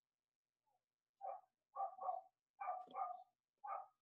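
Faint, short calls in quick succession, some in pairs, starting about a second in after dead silence.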